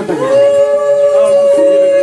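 Conch shell (shankha) blown in one long, steady, unwavering note, the auspicious call sounded during the Bhai Phota forehead-marking rite.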